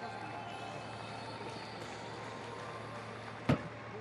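Steady stadium crowd murmur, then a single sharp thud about three and a half seconds in: a long jumper's take-off foot striking the take-off board.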